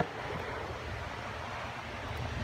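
Steady low background noise with no distinct events, picked up by a phone's microphone.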